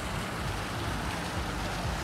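Decorative fountain jets splashing into a pool, a steady hiss of falling water.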